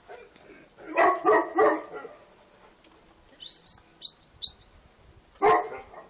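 Small dog barking: three quick barks about a second in and another near the end. Birds chirping in between.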